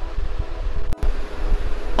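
Steady background noise with a low hum, like a fan or air conditioner running. A short click comes about halfway through.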